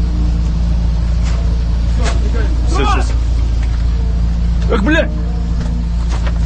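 Military truck engine running close by, a steady low drone, while a man's voice calls out twice, about three seconds in and again near five seconds.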